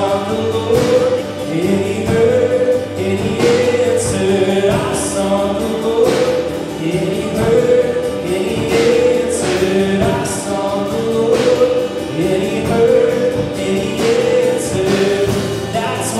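Live worship song: singing in long held notes over a strummed acoustic guitar, with a steady strumming rhythm.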